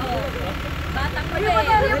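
People's voices talking and laughing over the steady low rumble of an idling vehicle engine.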